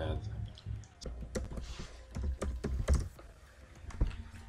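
Keystrokes on a computer keyboard: an irregular run of typing clicks from about one to three seconds in.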